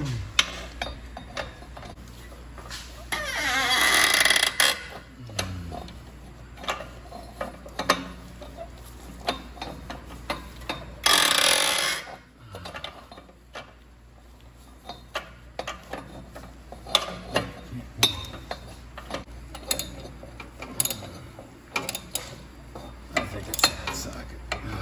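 A wrench being worked back and forth on the exhaust bolts of a catalytic converter, giving many short, irregular metallic clicks and ticks. Two louder rushing noises of about a second each come about four and eleven seconds in.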